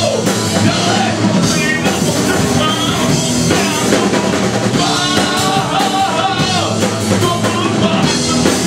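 Live rock band playing a loud song: drum kit, guitars and a singer's vocals at the microphone.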